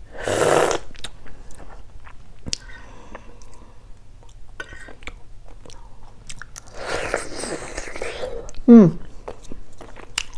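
Close-up mouth sounds of eating a balut (boiled fertilized duck egg): chewing with small wet clicks, and slurps of the egg's broth, a short one at the start and a longer one about seven seconds in. A brief hum near the end.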